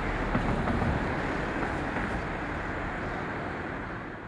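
Steady outdoor background noise with a heavy low rumble and no distinct events.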